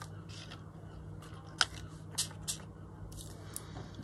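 Hands working on paper craft tags at a cutting mat: a few short, sharp clicks and brief hisses spread through the second half, over a faint steady hum.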